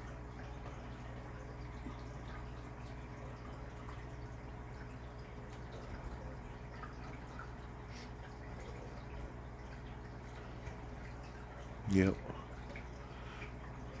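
Running aquarium: a steady low hum from its pump and filter, with faint bubbling and dripping water from the air bubble curtain and filter outflow.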